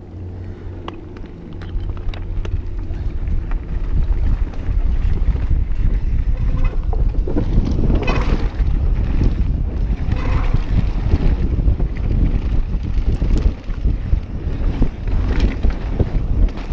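Wind buffeting an action camera's microphone over the rumble and rattle of mountain-bike tyres and frames on a dirt trail, with scattered clicks and clatters. It is quieter for the first few seconds and gets louder from about four seconds in as the bikes pick up speed down the trail.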